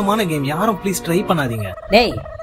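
A person's voice, wordless, its pitch wobbling rapidly up and down, ending in a long falling glide.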